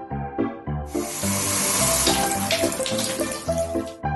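Water running steadily, as from a tap, starting abruptly about a second in and cutting off just before the end, over background music with a steady beat.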